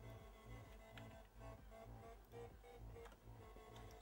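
Faint playback of an unfinished house track over studio monitors: a steady four-on-the-floor kick drum at about two beats a second, with synth tones above it.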